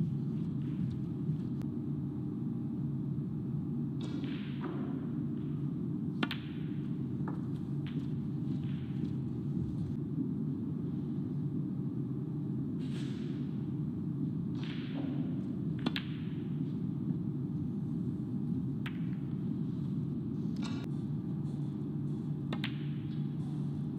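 Snooker balls and cue: a handful of sharp, separate clicks of cue tip on cue ball and ball on ball, several seconds apart, over a steady low hum.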